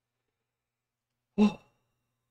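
Silence, then about a second and a half in a man's brief voiced sigh.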